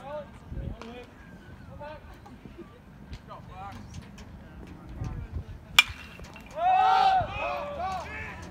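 A bat strikes a baseball with one sharp crack near the end. Right after it, several voices yell, over steady chatter from players and spectators.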